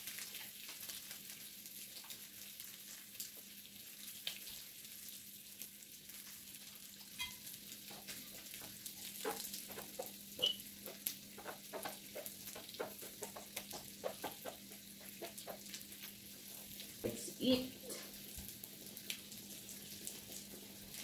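Pork belly slices sizzling on an electric grill plate: a steady soft hiss, with a run of light clicks and pops through the middle and latter part as chopsticks work in the pan.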